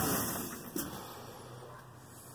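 A van's idling engine being switched off: its running sound dies away over about the first second, leaving a faint low hum, with a light click just under a second in.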